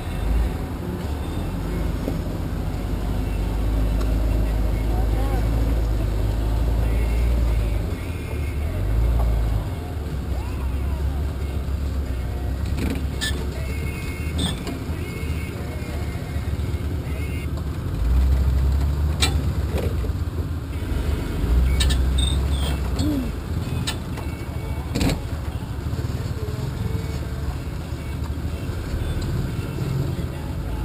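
Engine of a lifted, solid-axle-swapped S10 Blazer running at low speed on a rough dirt trail: a low rumble that rises and falls as the throttle is worked. Several sharp knocks come through over the course of it, the loudest about 19 and 25 seconds in.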